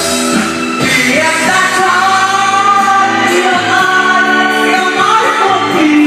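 Karaoke: a man singing into a microphone over a loud backing track, the sung voice carrying a held melody line.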